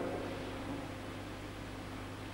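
Steady background hiss with a low hum beneath it, no distinct sound event: room tone on an old tape recording.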